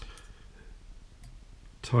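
A sharp click, with a fainter one just after, as fly-tying tools are handled at the vice, then low room tone.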